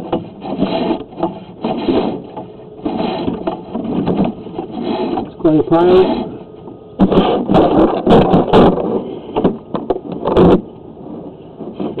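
Indistinct, unclear speech, with several sharp knocks or clatters in the second half.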